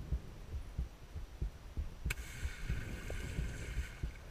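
Heard from underwater: a person plunging feet-first into the lagoon. About two seconds in, a sudden steady fizzing hiss begins as the bubble cloud rushes down, over irregular muffled low knocks of water against the camera housing.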